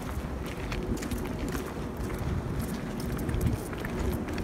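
Footsteps on pavement while walking, with a low wind rumble on the phone microphone and chewing of a mouthful of brownie, heard as a steady run of small ticks and taps.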